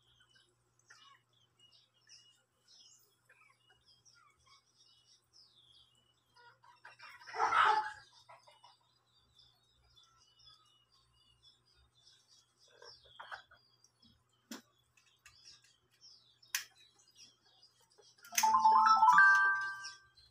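Birds chirping faintly, with a loud brief sound about seven seconds in and a short phrase of steady tones stepping upward in pitch near the end, like a melody or ringtone.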